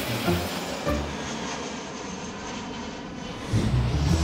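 Jet airliner engine noise, a steady rush that dips in the middle, under theme music whose low beat comes back in strongly near the end.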